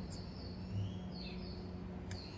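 Quiet room tone: a steady low hum, with a few faint, short, high bird chirps over it.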